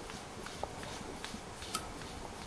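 A few faint, sharp plastic clicks as the cap of a Brother ScanNCut blade holder is twisted down tight by hand; the loudest click comes near the end.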